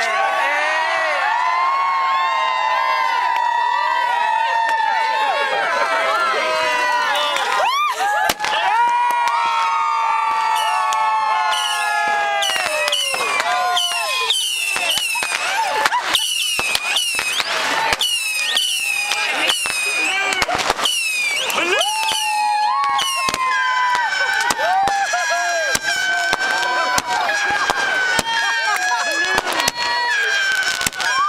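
A group of people shouting and cheering together. From about twelve seconds in, a rapid run of fireworks bangs and crackles joins the shouting and keeps going to the end.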